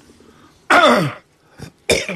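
A man's brief vocal sound that drops steeply in pitch, followed just before the end by a short, sharp throat clearing.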